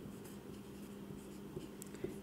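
Felt-tip marker writing on a whiteboard: faint short strokes and scratches of the tip as a word is written.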